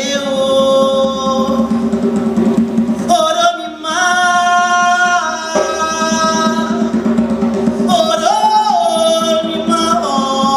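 Live band music: a singer holds long sung notes over steady hand-drum and drum-kit percussion. The voice swoops up into a higher held note about eight seconds in.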